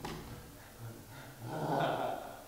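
A performer vocalising like a dog, a growl that swells loudest near the end, after a sudden sound right at the start.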